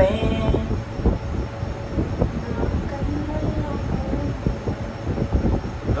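Rumbling, garbled audio from a phone speaker, with faint wavering tones under a dense rumble.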